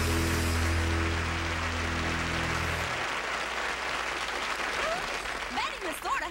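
A country band's final chord is held and rings out over studio audience applause, then stops about three seconds in while the applause carries on alone.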